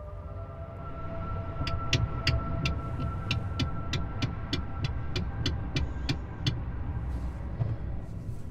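Low rumble of an ambulance cab with its engine running. From about two seconds in, a sharp, even ticking runs at about three ticks a second for several seconds, over a faint steady tone.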